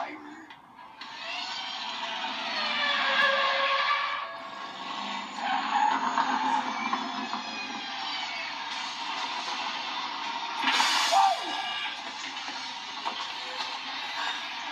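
A film soundtrack heard from a television's speakers in a room: a car's engine and tyres with background music, and a brief loud burst of noise near the end.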